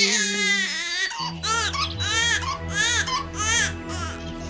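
An infant crying: one long wail, then a run of short, rising-and-falling cries about half a second apart. Low held notes of background music come in about a second in.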